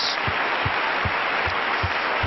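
Congregation applauding: steady clapping from many hands, with short low thumps about every half second underneath.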